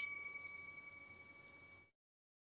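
One bell-like chime sound effect, struck once and ringing out, fading away over nearly two seconds. It is the ding that goes with a subscribe-and-like button animation.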